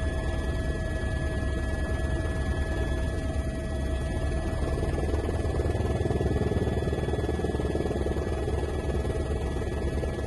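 Helicopter heard from inside the cabin: a steady rotor chop with a constant turbine whine.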